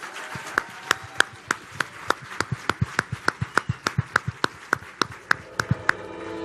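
Audience applauding. Loud, evenly spaced claps come through the crowd's clapping at about three a second.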